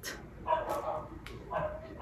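A dog whimpering in short high-pitched calls, twice and again at the end, under light clicks of a lipstick box being handled.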